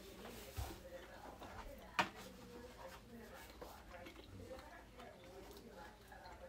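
Quiet sounds of eating pie with a metal fork: chewing and small mouth noises, with one sharp click of the fork about two seconds in.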